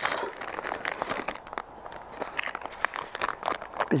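Scattered light clicks and rustles of ration packets being handled, the plastic and foil wrappers crinkling.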